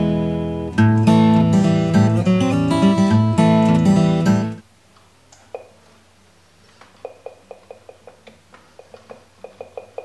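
Strummed acoustic guitar music that cuts off suddenly about halfway through, followed by a run of faint, quick, evenly spaced clicks.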